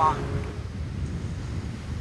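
Steady low rumbling outdoor background noise with no distinct event in it.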